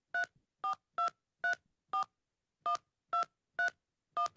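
Touch-tone phone keypad being dialled: a string of short two-tone beeps, eight in all, about two a second with a slightly longer pause just after the middle, as a phone number is keyed in.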